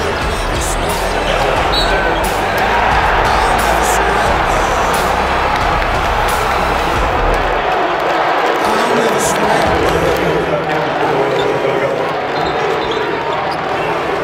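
A basketball being dribbled on a hardwood court, mixed under a sung rock soundtrack. The song's deep bass drops out a little past halfway.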